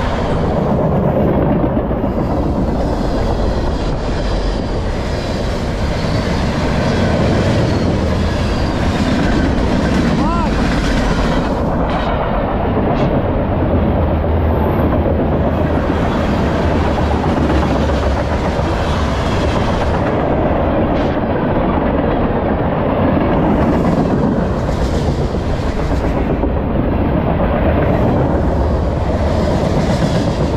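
CSX M403 manifest freight train's cars rolling past close by, a loud, steady rumble of steel wheels on rail. A few sharp clicks come through about twelve, thirteen and twenty-one seconds in.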